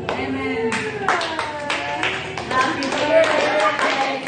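A small group clapping their hands in a steady beat, about three claps a second, starting a little under a second in, with several voices singing along.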